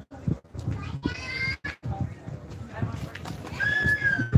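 Background voices of people talking, with two short high-pitched calls: one about a second in and a steadier held one near the end.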